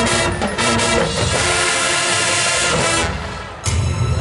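Marching band playing live: brass and woodwinds hold loud sustained chords over a bright wash, drop back briefly, then come in again suddenly and loud with low drums about three and a half seconds in.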